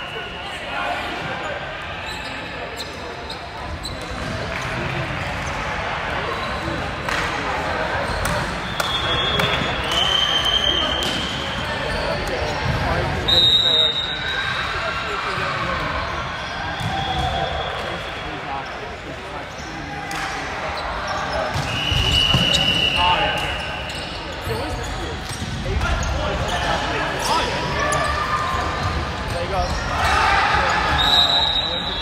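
Indoor volleyball play on a hardwood court: sneakers squeak sharply on the floor several times, and the ball thuds as it is hit and bounced, under players' voices calling out in an echoing sports hall.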